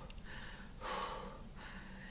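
A woman crying quietly: two soft, breathy sobbing gasps through her hand, with no voiced words.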